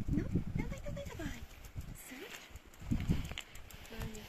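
Quiet, indistinct talking from a person nearby, with footsteps and leash scuffs on paving stones.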